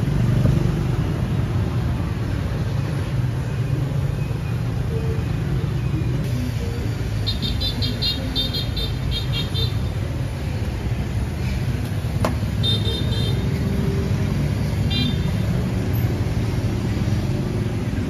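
Steady low rumble of street traffic. A few short bursts of light, rapid clicking and one sharp click sound over it.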